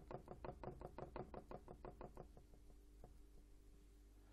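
Quick, even taps of a paintbrush dabbing acrylic paint onto a stretched canvas, about seven a second. They thin out and fade about two seconds in.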